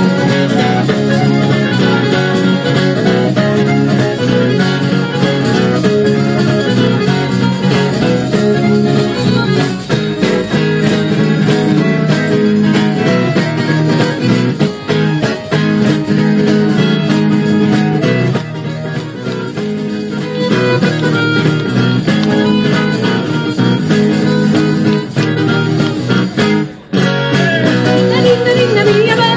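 Live acoustic folk band playing an instrumental passage: accordion and acoustic guitar with a hand-held frame drum. The sound drops out briefly about a second before the end.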